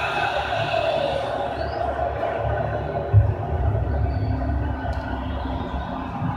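Film soundtrack playing from a TV and heard through the room: dense, rumbling music with a heavy bass hit about three seconds in.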